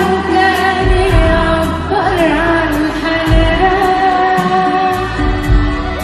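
A woman singing an Arabic pop song live with a band, drums and cymbals keeping a steady beat under her. She holds long notes, with an ornamented run of quick turns about two seconds in.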